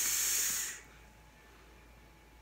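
Hiss of a hard drag through a Reload RDA clone dripper fired at around 70 watts: air and vapour rushing through the airflow slots over the hot coil. The hiss stops sharply under a second in.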